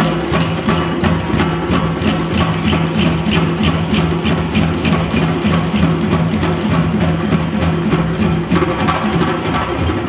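An ensemble of djembe hand drums playing together in a fast, steady rhythm.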